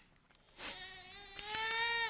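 A young child's voice making one long, high drawn-out sound that rises slightly in pitch, starting about half a second in.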